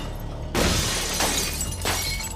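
Glass front of a weapon storage case smashed in: a sudden crash of shattering glass about half a second in, then two more sharp breaking strikes, over a low music drone.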